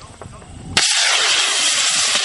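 Skyripper hybrid rocket motor igniting about three-quarters of a second in: the sound cuts in suddenly and runs on as a loud, steady hiss as the rocket lifts off.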